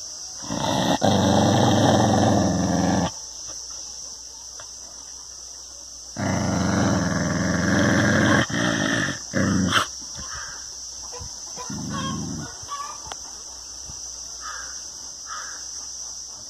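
A dog growling at its own reflection in a mirror: four low growls, the first lasting about three seconds and the second about two, then two short ones, with the last few seconds quieter.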